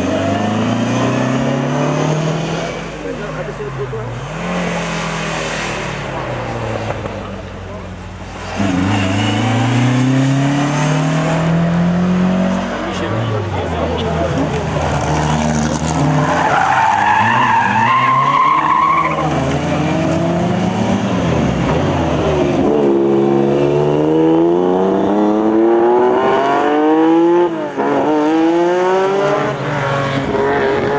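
Classic 1970s rally cars, a Toyota Levin TE27 and a Ford Escort Mk1, being driven hard on a closed stage. The engines rev high and climb and drop in pitch with each gear change, and there is a high squeal around the middle.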